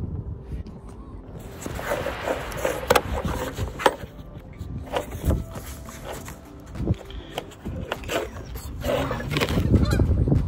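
A wrench loosening the mounting nuts of a Honda CRX moonroof panel: scattered metallic clicks and knocks, with squeaky scraping that is strongest near the end.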